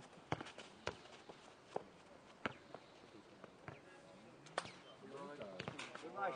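A footnet ball being kicked and bouncing on the clay court: about seven sharp, separate thuds spaced irregularly, the loudest in the first second. Players' voices come in near the end.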